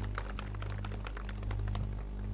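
A rapid, irregular patter of sharp clicks, several a second, thinning out near the end, over a steady low hum.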